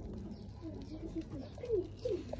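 A dove cooing in a run of short low notes, the loudest ones falling in pitch near the end.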